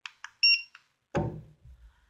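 Two quick clicks, then one short, high electronic beep from a handheld barcode scanner, the confirmation of a good scan that adds one piece to the count. A brief vocal sound follows about a second in.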